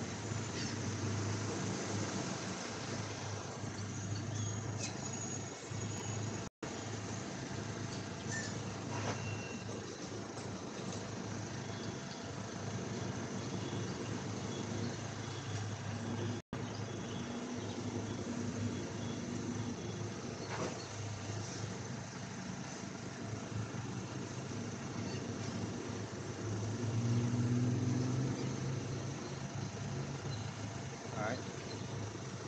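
A steady low mechanical hum that grows louder near the end, cutting out briefly twice.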